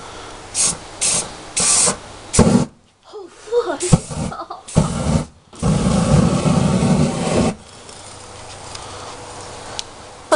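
An aerosol body-spray can gives several short hisses. About halfway through, a longer spray is lit into a fireball, a loud rushing burst of flame lasting about two seconds. A fainter steady rush follows it.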